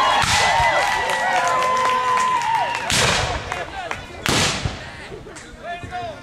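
Several high-pitched voices yelling and wailing over one another. Then two sharp, loud musket shots, about three seconds and about four and a half seconds in: black-powder muskets firing blanks.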